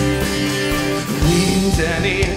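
Live band music between sung lines: a strummed acoustic guitar with an electric bass guitar, the bass notes coming in about a second in.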